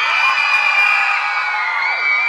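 Theatre audience cheering and screaming, many high voices whooping at once, loud and sustained.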